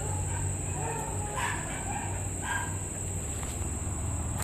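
Faint, short dog barks, two of them about a second apart, over a steady low hum.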